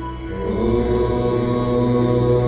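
Music with a chanted mantra over a steady drone. The chanting voice comes in about half a second in, and the sound gets louder from there.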